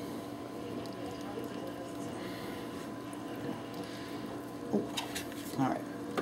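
Steady kitchen hum with faint soft handling sounds of a whole wheat tortilla being rolled up by hand around a bean filling, with a few small taps near the end.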